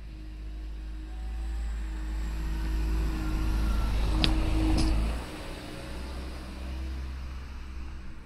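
A car's engine running close by, its low rumble growing louder for about five seconds and then dropping away suddenly. Two sharp clicks about half a second apart come just before the drop.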